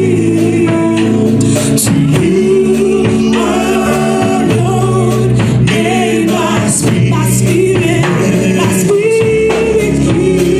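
A man and a woman singing a gospel duet through microphones, over steady sustained instrumental backing with light percussion.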